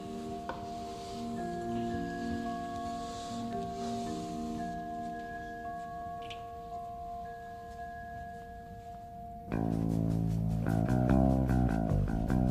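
Background score music: quiet, sustained held notes, then about nine and a half seconds in a louder rhythmic piece with a steady beat and bass comes in suddenly.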